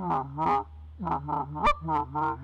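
Tim Grounds short reed goose call blown in a laydown call: about six short, low murmur notes, with sharper clucks that break upward in pitch mixed in, the notes coming faster in the second half. Working more clucks into the murmur mimics a flock on the ground that is still excited, meant to keep circling geese from drifting away.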